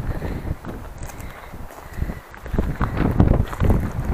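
Footsteps on the loose stones and gravel of a steep rocky trail, irregular and heavier in the second half, with wind rumbling on the microphone.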